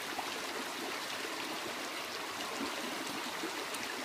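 Creek water flowing steadily.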